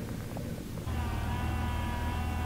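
Steady hum of a nori harvesting boat's machinery, starting suddenly about a second in after faint background noise.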